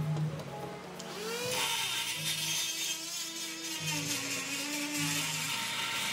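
Die grinder with a carbide burr cutting into cast-aluminium engine cover, starting about a second and a half in and running steadily with a high hiss.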